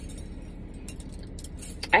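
A few faint light clinks and jingles over a low steady hum, then a woman starts to speak at the very end.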